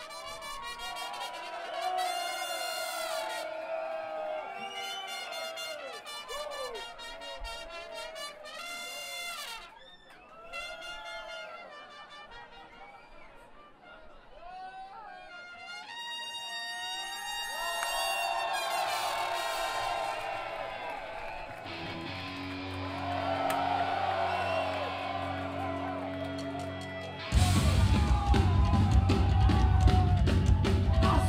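Live trumpet playing a solo intro melody over crowd noise, with low held notes joining later. Near the end a hardcore punk band crashes in loudly with distorted guitars and drums.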